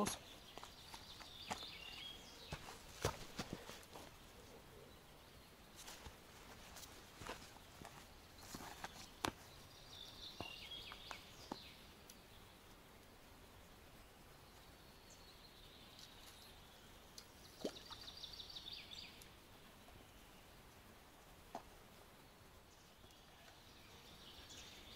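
Quiet riverside ambience: a songbird sings short trilling phrases a few times, with scattered soft clicks and rustles close by as the float rod is handled.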